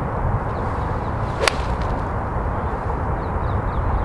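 A six-iron striking a golf ball: one sharp, crisp click about one and a half seconds in, over steady wind rumble on the microphone.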